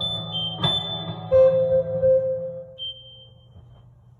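A live band with electric guitar and drums finishing a song. Final chords are struck about half a second in and again just over a second in, then ring out with a thin high tone above them and fade away before the end.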